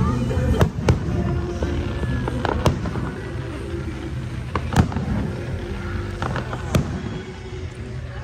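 Aerial fireworks shells bursting overhead in a string of about six sharp bangs, spaced unevenly over several seconds, with a low rumble between them.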